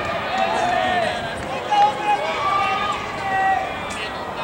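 Several voices shouting at once, long drawn-out calls overlapping one another, as from players or fans calling out at a baseball game.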